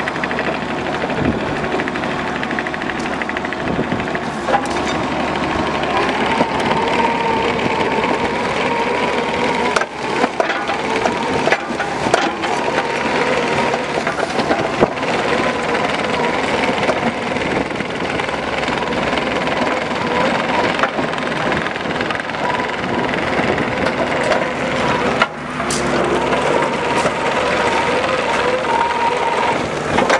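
Kubota KX71-3 mini excavator travelling on gravel: its three-cylinder diesel runs steadily under a steady whine, and the rubber tracks crunch and crackle over the stones.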